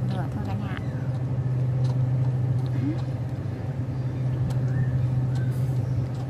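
A steady low mechanical hum, like a motor running nearby, with a few faint clicks over it.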